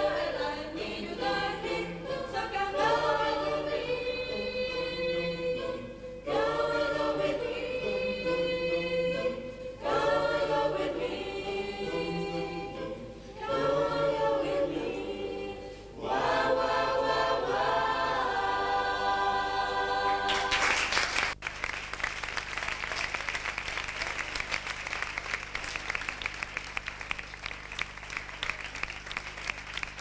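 Choir of young male and female voices singing a song in several phrases separated by short breaths. About twenty seconds in the singing ends and the audience breaks into applause.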